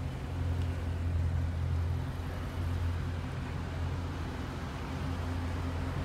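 Car engine idling steadily with a low rumble.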